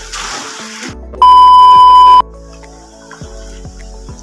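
One loud, steady electronic beep of about one second, a single high tone, starting about a second in, over background music; splashing water is heard briefly at the very start.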